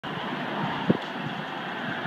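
Steady road and tyre noise of a car driving, heard from inside the cabin, with one short low thump a little under a second in.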